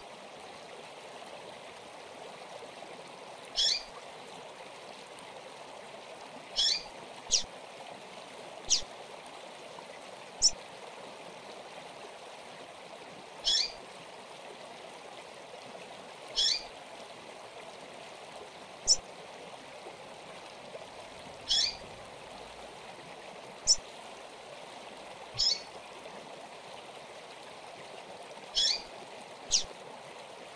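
Double-collared seedeater (coleiro) calling: about a dozen short, high notes that slide downward, coming singly or in close pairs every one to three seconds, over a steady rushing background like running water.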